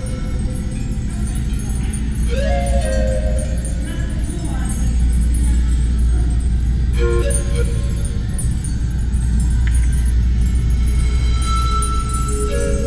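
Background music and crowd chatter in a loud games venue over a steady low hum, with one faint click of pool balls striking about ten seconds in.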